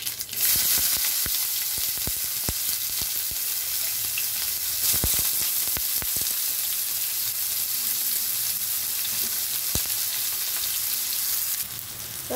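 Chopped onions frying in hot oil in a nonstick pan: a loud, steady sizzle that starts suddenly about half a second in, as the onions go into the oil, and eases near the end. Scattered light clicks of stirring run through it.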